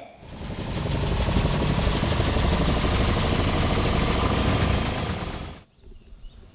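A loud, rough, rattling mechanical noise, edited in as a sound effect. It builds up over about a second, holds steady, then cuts off abruptly shortly before the end.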